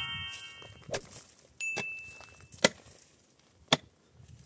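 A pick striking hard, stony ground in a few sharp single blows about a second apart; one blow near the middle is followed by a brief high ring.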